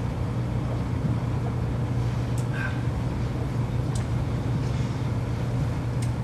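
Steady low room hum with a faint background hiss, broken only by two faint clicks about two and a half and four seconds in.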